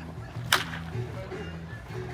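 Wooden baseball bat cracking against a pitched ball once, about half a second in, a single sharp, loud crack. Stadium music plays underneath.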